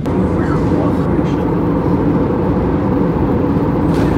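Loud, steady drone of an airliner in flight, heard from inside the cabin: a deep, even rumble of engine and airflow noise that cuts off abruptly near the end.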